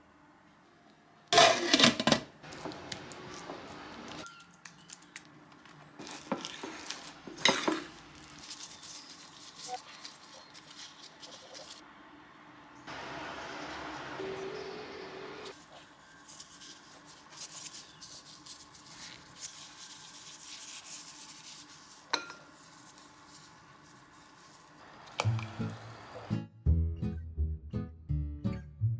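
Kitchen preparation sounds: sharp knocks of utensils on a counter and bowl, scattered clinks of dishes, and a steady hiss lasting about two seconds in the middle. Music with a bass line comes in near the end.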